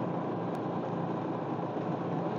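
Steady engine and road noise of a slow-moving vehicle, an even rumble with no distinct events.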